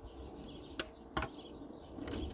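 Two short knocks close together about a second in, from a spirit level being handled on bricks, over faint outdoor background.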